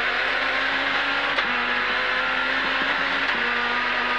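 Renault Clio S1600 rally car's 1.6-litre four-cylinder engine, heard from inside the cabin. It runs steadily on a stage, with two brief dips in pitch, about a second and a half in and again near the end.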